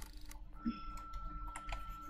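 Computer keyboard keys tapped a few times, scattered clicks of the spacebar and single-letter shortcut keys. A faint steady high tone starts about half a second in.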